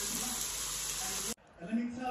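Chicken pieces sizzling in a frying pan, a steady hiss that cuts off suddenly about a second and a half in.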